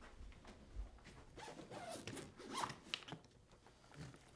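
Zipper of a soft-sided rolling suitcase being pulled open in several short rasps.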